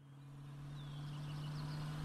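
Recorded outdoor street ambience fading in: a steady low hum of traffic with faint chirps above it, the background bed of an audio dialogue track.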